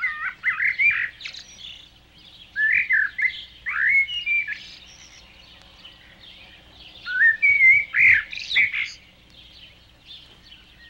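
Songbird singing in three short phrases of quick, gliding whistled notes: one at the start, one around three to four seconds in, and one near the end, with lulls between.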